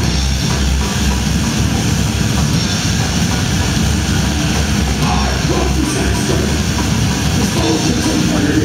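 Hardcore band playing live: loud, continuous distorted guitar, bass and drum kit with cymbals, picked up from within the audience.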